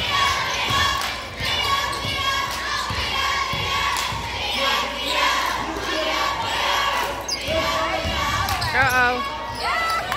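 A basketball being dribbled on a hardwood gym floor, with voices in the echoing hall. Sneaker squeaks come near the end.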